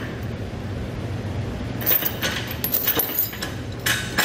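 Steel chain links clinking as a 3/8-inch chain is lifted and its hook end lowered into a trailer's stake pocket, with a few sharp clinks about two seconds in and another near the end, over a steady low hum.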